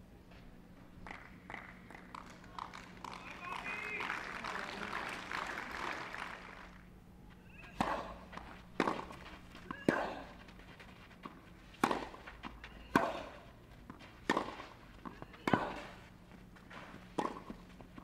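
A few seconds of low crowd voices, then a tennis rally on a clay court: a string of sharp racket strikes on the ball, roughly a second or so apart.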